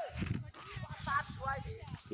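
Faint, indistinct voices with a low rumble underneath.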